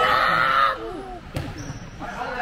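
Youth basketball game in a gym: spectators' voices, loudest in a burst during the first second as a shot goes up, and a single ball bounce on the hardwood floor about a second and a half in.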